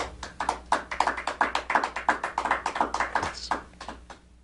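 A small audience applauding, the separate claps of a few people heard distinctly, thinning out near the end.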